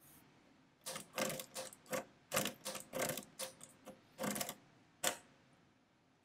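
A 1910 Herzstark & Co. Austria Model V step-drum mechanical calculator being hand-cranked for a division, giving irregular bursts of metallic clicking and clatter from about a second in until about five seconds in. The machine is doing repeated subtractions, about three crank turns, until it locks.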